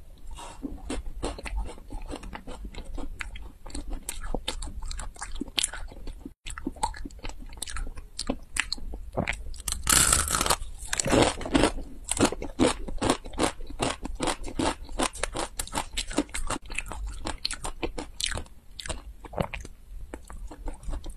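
Close-miked crunching and chewing of chocolate-coated crispy snacks, a dense run of crackles with one loud, full bite about halfway through.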